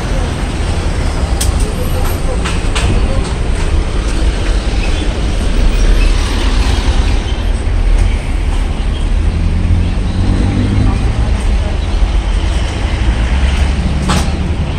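City street traffic: vehicle engines running and passing close by, with a deep, steady rumble.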